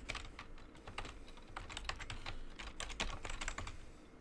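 Computer keyboard typing: a quick, irregular run of keystrokes.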